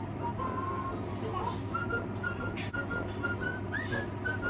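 A high, thin tune of short piping notes: one held note, then a run of short notes from about halfway through ending in a quick upward slide, over a steady low hum.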